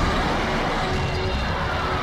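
Steady city street noise with a low traffic rumble.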